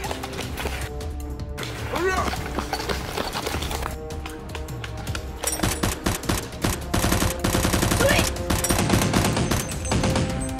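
Rapid-fire gunfire sound effects over background music, the shots starting about five and a half seconds in and coming thick and fast to the end.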